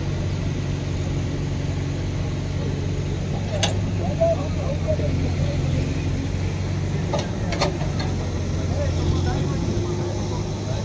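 Diesel engine of heavy machinery idling steadily, with distant voices of workers and a few sharp metallic knocks, one about a third of the way in and two close together past the middle.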